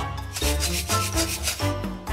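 Clear plastic baby rattle toy with beads inside shaken hard, a rapid run of rattling for about a second and a half that stops near the end, over background music.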